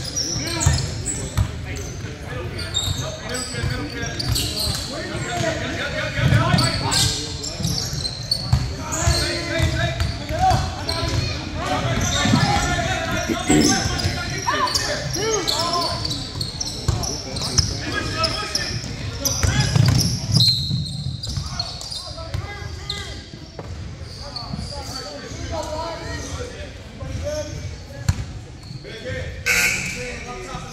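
Basketball bouncing on a hardwood gym floor during play, with shouting voices of players and spectators echoing in the hall.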